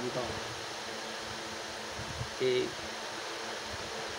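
Steady background hiss, with a man's voice saying two short words, one just after the start and one about two and a half seconds in.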